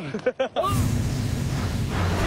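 A few bursts of laughter at the start, then about half a second in a sudden whooshing boom, a broadcast transition sound effect, that carries on as a deep rumble.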